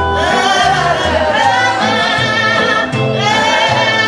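A live swing-blues band: a woman sings long, wavering notes over a plucked upright bass and an archtop guitar.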